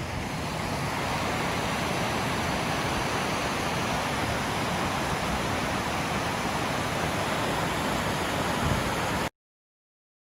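Steady rushing of a mountain stream tumbling over rocks, which cuts off suddenly about a second before the end.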